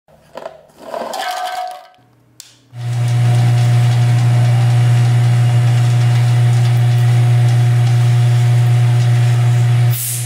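Steady mechanical hum of a motor-driven machine, starting about three seconds in after a few short clicks and a brief rattle, and holding one even pitch throughout.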